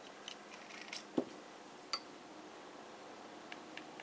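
A few faint, scattered clicks and taps of a fountain pen being handled, the sharpest a little over a second in.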